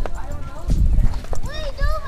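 A few short vocal calls from people riding, over a low, gusting rumble of wind on the moving camera's microphone.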